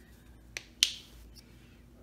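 A faint tick, then a single sharp click just under a second in, from the paint supplies and dotting tools being handled.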